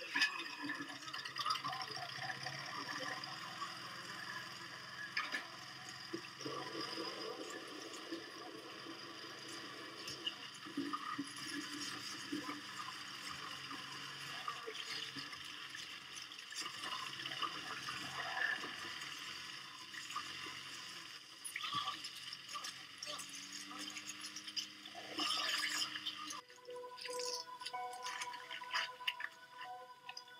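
Film sound mix of a lawnmower running under wet splashing and spattering effects, with music and voices; the sound changes abruptly near the end.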